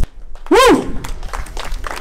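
A man's voice gives one loud drawn-out call into a microphone about half a second in, followed by scattered clapping and applause from the crowd.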